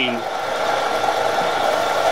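Vertical knee milling machine running steadily, its end mill cutting a metal part under flood coolant, with a constant hum and an even hiss of coolant spray.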